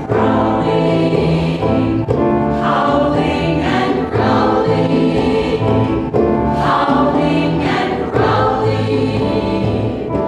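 A stage-musical ensemble singing a chorus number together, with low sustained accompaniment notes underneath.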